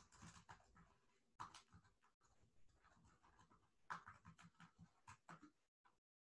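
Near silence: faint, irregular small sounds at the microphone that cut in and out, with dead-silent gaps.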